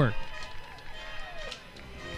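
A man's voice ends at the very start, followed by a quieter stretch of faint, thin sliding tones, like music in the background, as the radio broadcast goes to a break.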